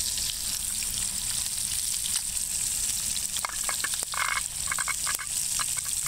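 Catfish frying in a pan over a small wood-fired hobo stove: a steady sizzle, with a cluster of short crackles in the second half.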